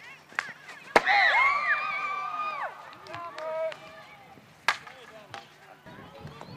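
Sharp clacks of field hockey sticks hitting the ball, the loudest about a second in, followed at once by players' high-pitched shouting held for a couple of seconds; a few more single clacks come later.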